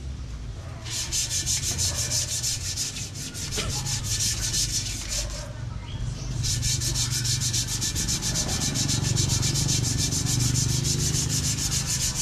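A fast, even rasping like machine sanding, about ten strokes a second, stopping for about a second midway and then starting again, over a low hum.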